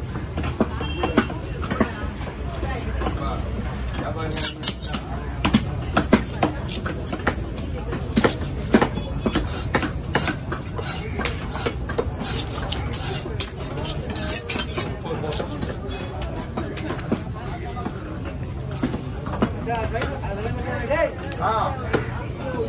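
A large curved fish knife chopping through a mahi-mahi into steaks on a wooden block: repeated sharp, irregular chops, thickest about four to five seconds in and again from about eight to fifteen seconds. Voices and a low steady rumble run underneath.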